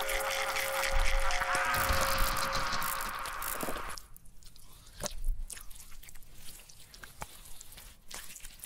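Logo intro sound design: a dense, swelling rush of noise with a few held tones that cuts off abruptly about four seconds in, followed by quieter scattered clicks and crackles with one louder hit.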